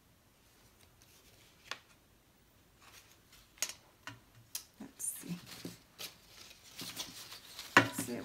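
Paper and card being handled on a cutting mat: scattered rustles and light taps that come more often after a few seconds, ending in a sharp knock near the end as a plastic basket of paper trimmings is set down.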